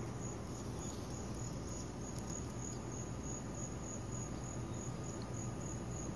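Insects chirping: a steady, high-pitched, evenly pulsed trill.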